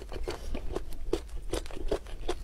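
Close-miked chewing of a soft marinated boiled egg: irregular wet mouth clicks and smacks, several a second.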